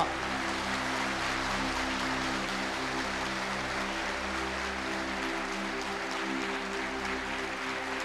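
A large crowd of students clapping steadily and evenly, with no break, over a held background music chord.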